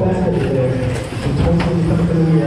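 Race announcer's voice over a PA, echoing in a large hall and mostly unclear, with a few sharp knocks from electric 1/10-scale stadium trucks on the track.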